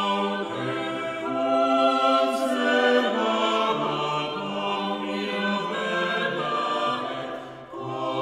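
Eight-voice a cappella choir singing a Renaissance polyphonic motet, held chords shifting from voice to voice. The sound thins briefly near the end at a phrase break before the voices enter again.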